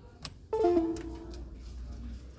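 A short electronic chime, a few notes that start suddenly and ring out over about a second, after a faint click.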